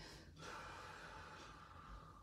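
Near silence: faint room tone with a soft, drawn-out breath starting about half a second in.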